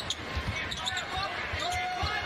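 Basketball dribbled on a hardwood court, several bounces in a row, over the steady background noise of an arena crowd.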